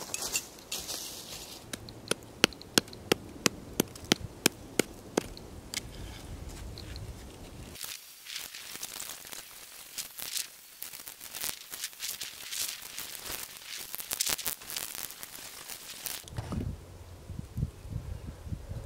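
Hammer striking rock: a steady run of sharp knocks, about four a second, then a faster, denser run of strikes from sped-up footage.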